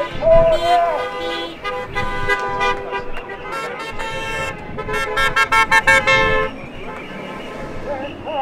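Car horns honking repeatedly from passing traffic, several sounding at once and overlapping, stopping about six and a half seconds in.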